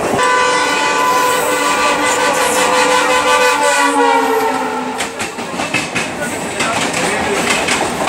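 Train horn sounding for about four seconds, its pitch sliding slightly down as it goes, followed by the rattling clatter of a train running over the rails.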